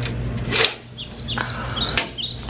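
Quick, high bird chirps, short falling tweets repeating several times a second in the second half, over a steady low hum. A brief rush of noise comes about half a second in.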